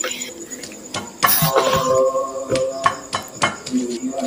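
Stone pestle (ulekan) knocking and grinding chilies, shallots and garlic in a volcanic stone mortar (cobek), a run of short irregular knocks and scrapes. Soft background music plays with held notes through the middle.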